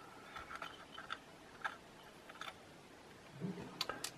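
Faint, sparse clicks and taps of a small hinge being handled and fitted against a wooden lid, over quiet room tone.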